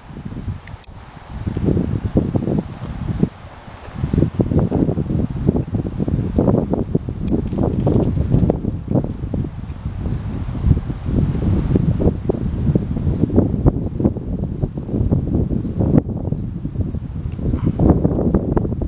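Wind buffeting the microphone in gusts, a low rumble that comes and goes. It is lighter in the first few seconds and heavier and more constant from about four seconds in.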